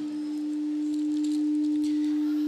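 A single steady, pure electronic tone in the upper bass, held without a break and swelling slightly louder.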